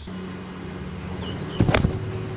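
A putter swung like a full iron shot strikes a golf ball off the grass: one sharp club-on-ball click about one and a half seconds in, struck pure. A steady low motor hum runs underneath.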